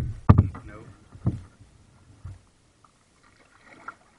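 Knocks and bumps on a plastic kayak's hull, picked up through the camera mounted on it. There are four in the first two and a half seconds, the first two the loudest, and a faint voice comes in near the end.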